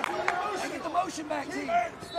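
Voices calling out from mat side in a gym during a reset in a wrestling match, over light crowd noise.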